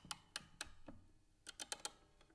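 Faint, sharp clicks at an uneven pace, ending in a quick run of several clicks, like keys or a small mechanism: a clicking sound effect for an animated title.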